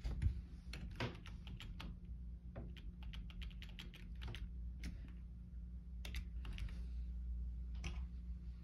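Keys of a Logitech computer keyboard pressed by hand: irregular clicks in quick runs, thinning out in the second half, over a steady low hum.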